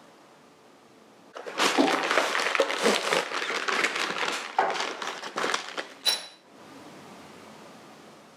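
Paper wrapping crinkling and rustling as a new motorcycle chain is unwrapped from it, with the chain's links clinking, for about five seconds starting a second and a half in. A short, bright metallic ping about six seconds in.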